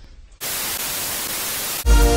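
A burst of hissing static noise, like a TV-static transition effect, starts suddenly about half a second in and cuts off just before the end, where electronic music begins.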